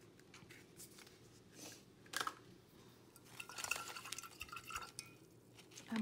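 A small jar of gold acrylic paint being handled and its lid twisted shut: a sharp click about two seconds in, then a gritty scraping, with a faint squeal, lasting about two seconds.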